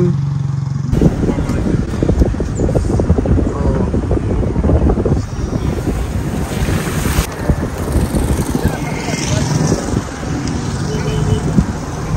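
Wind buffeting the microphone: a dense, gusty low rumble with constant crackle, setting in suddenly about a second in.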